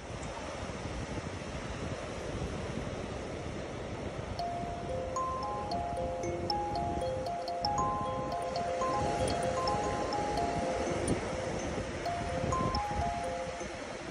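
Small wooden box kalimba plucked with the thumbs: from about four seconds in, a slow run of ringing metal-tine notes on a few pitches, each note ringing on into the next. Underneath runs the steady wash of surf and wind on the microphone.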